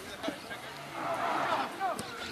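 Voices of players and spectators calling out across a football pitch, rising to a louder burst of several voices shouting at once about a second in.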